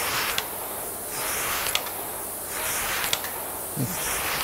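Concept2 rowing machine's air flywheel whooshing in surges, one with each drive stroke, about three strokes at a racing rate of over 40 strokes a minute, with a sharp click now and then.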